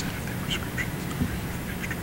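Hearing-room background: a low steady hum with scattered faint murmurs and small rustles, as an aide speaks quietly into the chairman's ear away from the microphones.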